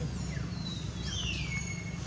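One long, high whistled call sliding down in pitch over about a second and a half, over a steady low rumble.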